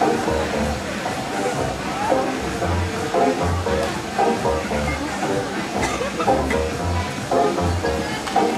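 Music with a pulsing bass and held melodic notes, with voices in the mix.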